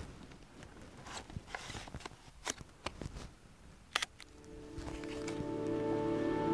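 Scattered small clicks of a 4x5 large-format camera's lens shutter being set, with a sharper double click about four seconds in. Then background music with sustained chords fades in and grows louder.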